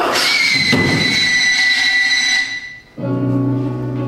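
A loud, sudden musical sting: a crash with a piercing high shriek, held for about two and a half seconds before it fades, marking the murder in the score. About three seconds in, a low sustained musical chord comes in.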